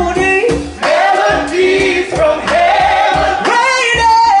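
A live soul band playing, with several voices singing over bass guitar and drums.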